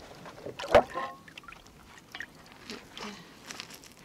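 Vinegar sloshing and dripping in a plastic tub as the cast iron pieces of an antique waffle iron are lifted and moved in their rust-removal bath. There is one sharp clunk of the pieces, with a brief ring, about three quarters of a second in.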